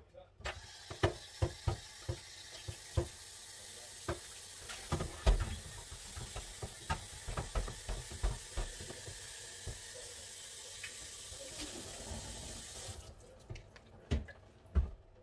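Kitchen tap running into a sink, with repeated knocks and clatters of dishes in the basin. The water starts about half a second in and shuts off suddenly near the end.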